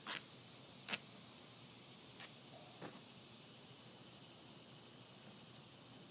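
Near silence with four faint clicks and taps in the first three seconds, from handling a plastic drain-pipe fitting and 4-inch corrugated drain pipe.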